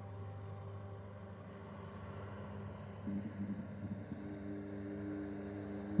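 Distant motorboat engine running as a low, steady hum, with a wavering low tone joining about three seconds in. Held musical tones die away in the first second.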